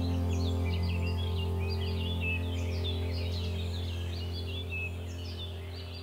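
Ambient music: a sustained low chord slowly fading out, with birds chirping over it.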